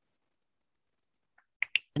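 Near silence, with the audio gated to nothing, then a few brief faint clicks in the last half-second just before a woman's voice starts.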